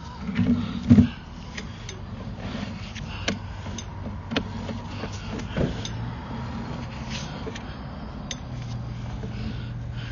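Sewer inspection camera's push cable being pulled back and handled over a steady low mechanical hum, with scattered sharp clicks and two heavier thumps in the first second.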